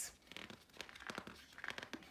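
Faint crackling and rustling of a picture book's paper pages handled by the reader's fingers, a scatter of small irregular clicks.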